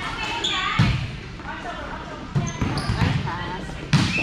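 A volleyball being hit three times in a rally, sharp smacks roughly a second and a half apart: a serve, then a pass, then a set or attack at the net. Players' voices are heard around the hits.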